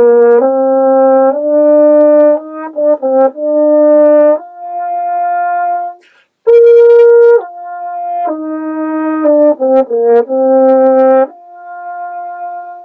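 French horn playing two short melodic phrases of several notes. Each phrase ends on a softer held note. It is played with the open "ah" lip setting of the do-ah exercise: more airflow and less tight, less buzzy lips, so the tone feels sung.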